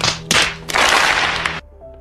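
Two quick slaps of hands against foreheads in exasperation, followed by about a second of rushing noise, over background music.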